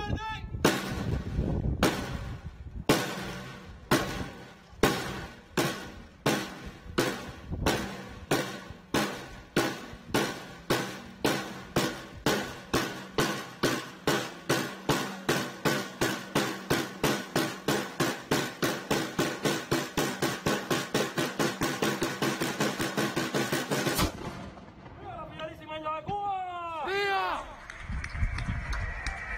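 A military drum beaten in single strokes about a second apart that steadily quicken into a fast roll, then stop abruptly. This is the drum roll that builds up to the firing of the nine o'clock cannon.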